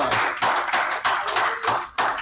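Hand clapping: a dense, continuous run of claps.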